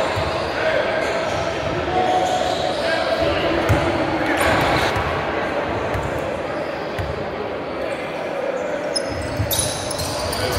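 A basketball bouncing a few times on a hardwood gym floor before a free throw, with the murmur of voices echoing in a large hall. Short high squeaks near the end, from sneakers on the court.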